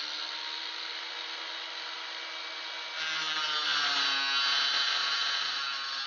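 Angle grinder running freely, then about three seconds in it bites into a metal plate. Its pitch drops a little and the sound gets louder and harsher as it cuts through.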